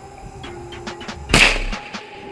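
A few light clicks, then one loud gunshot about a second and a half in, dying away over half a second.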